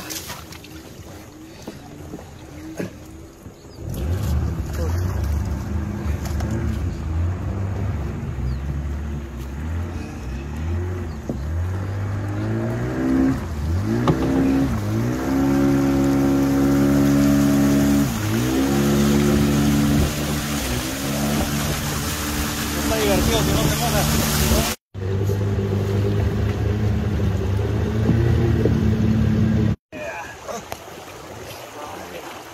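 Outboard motor on a wooden dugout canoe running from about four seconds in, its pitch rising and falling repeatedly as the throttle is opened and eased. The sound drops out abruptly twice, near the end and a few seconds before it.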